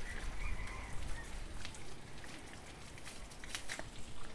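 Water from a hose spattering onto a motorbike and the wet ground, with a few sharp clicks near the end.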